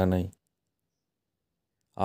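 A narrator's voice ends a phrase a moment in, followed by about a second and a half of dead silence until speech picks up again at the very end.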